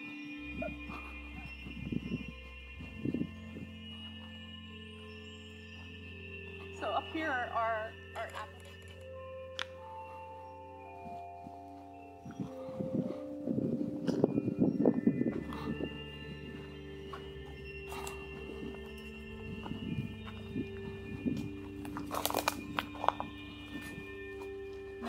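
Background music with long held notes that change pitch in steps, plus a few louder passages partway through.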